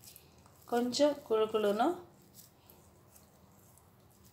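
A voice speaking briefly, about a second in, followed by near silence with only a few very faint soft ticks.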